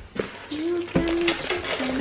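A woman's voice, from about half a second in, with some notes held level.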